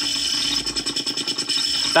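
Glitch-generator noise played through a small cigar box amp, chopped into a rapid, even stutter as a telephone rotary dial, wired in as a stutter effect, spins back and its pulse contacts cut the signal on and off. The stutter works as intended.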